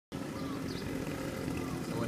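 Street ambience with a steady low hum of road traffic.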